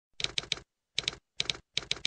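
Typing sound effect: quick clusters of two or three sharp key clicks, repeating about every half second with silence between.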